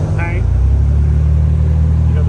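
A loud, steady low rumble, with one short spoken word just after the start.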